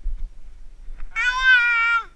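A loud, drawn-out cry with a clear pitch begins about a second in and lasts close to a second, sinking slightly in pitch at the end. Before it there are soft knocks and rumble from the moving body-worn camera.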